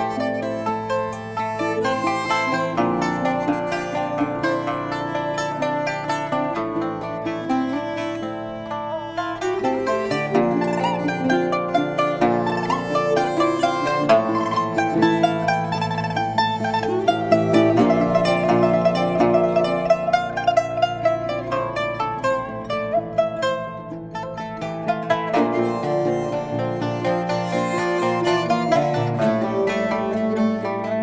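Instrumental music: a plucked Chinese ruan lute plays a busy melody over sustained low notes.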